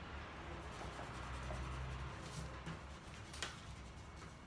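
Faint rubbing and handling of paper and stationery on a tabletop, like an eraser or pencil working on a paper chart, with a couple of light taps near the end.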